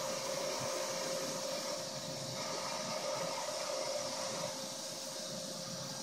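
Shop vacuum running as a blower, its hose pushing air into a handmade jet engine to spin the turbine up: a steady rushing hiss with one steady tone.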